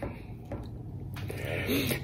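A man drawing a breath in, growing louder from about a second in, just before he starts to sing; a couple of faint mouth clicks come before it.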